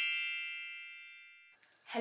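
A bright, bell-like chime sound effect: several high tones ring together and fade away smoothly, dying out after about a second and a half.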